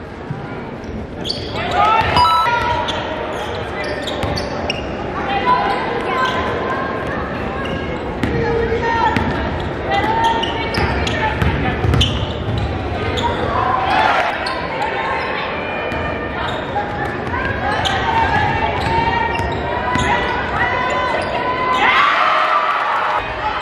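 Basketball game sound in a large gym: a basketball bouncing repeatedly on the hardwood court, over indistinct voices from players and crowd that echo in the hall.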